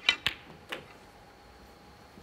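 Snooker shot: the cue tip clicks against the cue ball, the cue ball clicks sharply into a red a moment later, and a softer knock follows about half a second after that as the red goes into a pocket.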